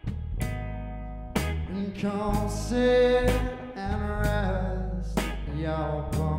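Blues trio playing a slow song live: guitar and bass over drums, with a drum or cymbal hit about once a second and a man singing at the microphone.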